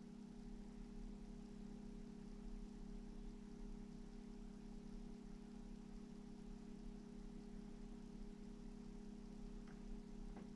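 Quiet room tone with a steady low electrical hum, with a faint tick or two near the end.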